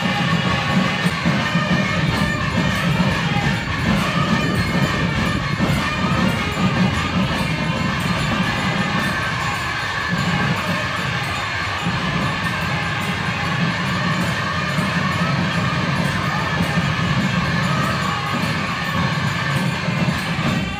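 Loud, continuous festival din at a Hindu temple puja: traditional temple music mixed with the noise of a crowd of devotees.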